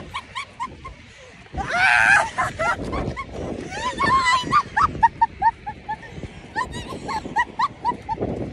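Women laughing hard: a loud shriek about two seconds in, then a long run of quick, high 'ha-ha' laughs, two or three a second, with wind rumbling on the microphone.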